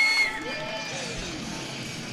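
Ice rink crowd cheering a home goal, the noise fading over the two seconds. A high, steady whistle tone cuts off about a quarter second in.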